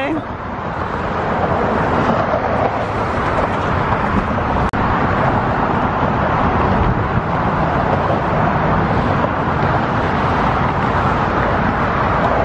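Steady noise of road traffic passing on the Golden Gate Bridge roadway, with a brief dropout about five seconds in.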